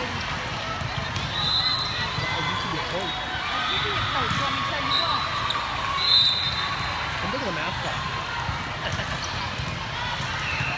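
Busy gymnasium with hardwood courts: many voices chattering at once and volleyballs bouncing on the floor. A few short, high steady tones cut through, the loudest about six seconds in.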